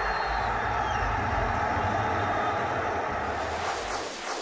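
Sound effects for a TV show's closing title animation: a steady rushing, rumbling noise, with several falling swooshes near the end as the channel logo sweeps in.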